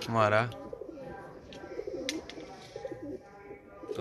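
Domestic fancy pigeons cooing in their loft: a run of low, wavering coos, one after another. A brief loud man's vocal sound comes right at the start.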